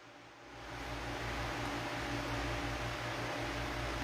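Steady background hiss with a faint low hum, room tone that comes up about half a second in and then holds level.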